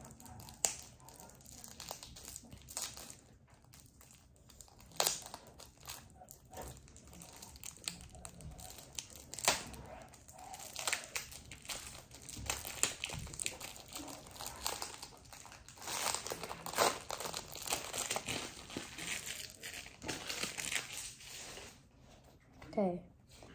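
Crinkling and tearing of a thin plastic wrapper being peeled off a stack of Pokémon trading cards, in irregular spells with sharp crackles.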